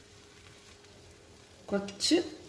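Faint, steady sizzle of oats dosa batter cooking on a hot pan, with a brief spoken syllable near the end.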